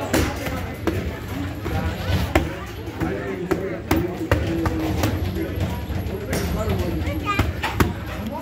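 Boxing gloves striking leather focus mitts, sharp slaps at irregular intervals, some in quick pairs, during mitt work, over background gym voices.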